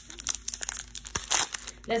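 Foil Pokémon TCG booster pack wrapper crinkling and tearing as it is pulled open by hand: a quick run of crackles, with a louder crackle a little past the middle.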